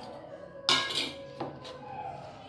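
Dishes clinking against a stainless steel mixing bowl as raisins are tipped in from a small bowl: a sharp ringing clink about two-thirds of a second in, the loudest sound, then a lighter one a little later.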